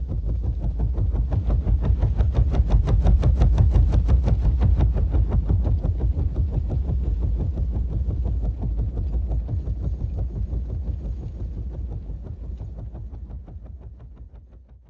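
Tandem-rotor Chinook helicopter's rotors beating with a fast, even chop. It swells up in the first few seconds, then slowly fades away near the end.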